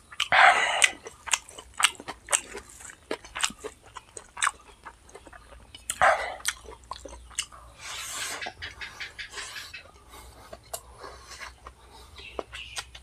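Close-miked chewing of a mouthful of pork biryani, with wet smacking and many sharp mouth clicks. Two short louder noisy bursts come about half a second in and about six seconds in.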